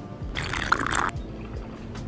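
A person sipping a drink from a glass: one short noisy slurp, starting about a third of a second in and lasting under a second. Background music with a steady beat plays underneath.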